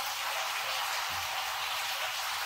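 Steady hiss of splashing water, even throughout with no distinct events.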